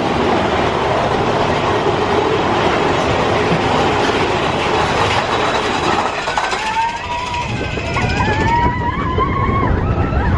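Mine-train roller coaster car running along its track, a loud, dense, steady rattling noise. It dips briefly about six seconds in. Riders' high wavering cries rise over it for the last three seconds.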